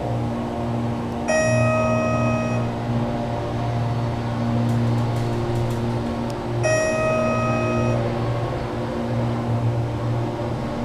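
Schindler 330A hydraulic elevator riding up, with a steady low hum throughout. Its in-car chime sounds twice, about five seconds apart, a single held tone each time lasting just over a second, as the car passes floors.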